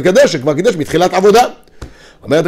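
A man speaking Hebrew for about a second and a half, then a pause broken by a single faint click near the end.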